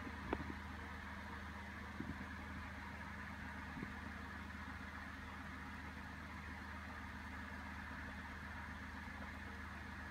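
A low steady hum of room tone with a few faint clicks, about a third of a second, two seconds and four seconds in.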